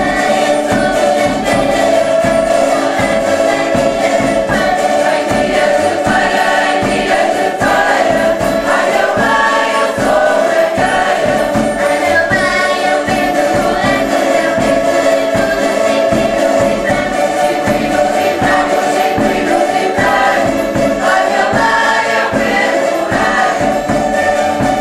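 A cavaquinho ensemble, small Portuguese four-string guitars, strumming a steady rhythm while the group sings together.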